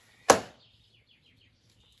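A single sharp smack or pop about a quarter second in, loud and quickly fading, followed by a few faint, short falling chirps.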